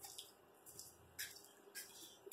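Near silence: shop room tone with a few faint, brief clicks.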